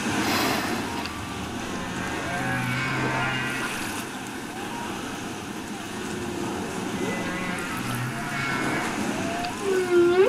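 Humpback whale calls: low moans and slow pitch-sliding cries over a steady hiss of ocean noise.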